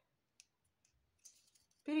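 Pieces of thin PET bottle plastic being handled and bent, making one sharp click about half a second in, then a few faint ticks and a soft crinkling rustle.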